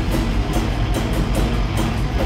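Hardcore band playing live: electric guitar through amp stacks over a drum kit, with cymbal hits about two to three times a second.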